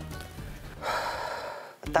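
A man's long breathy sigh about a second in, a contented exhale in the warm room, over soft background music.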